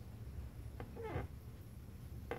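A brief, faint voice sound about a second in, over a steady low room hum.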